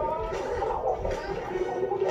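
Animated film soundtrack playing through a television speaker: music with a character's voice over it.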